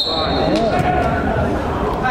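A referee's whistle blown in one steady high blast that ends about a second in, over men's voices calling out on the pitch.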